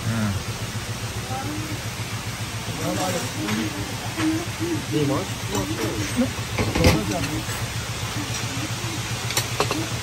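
Indistinct background talk, quieter than the speech around it, over a steady low hum. A single sharp click or knock comes about seven seconds in.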